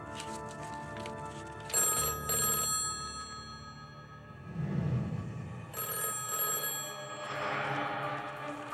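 Push-button desk telephone ringing twice, with the rings about four seconds apart, over an orchestral film score.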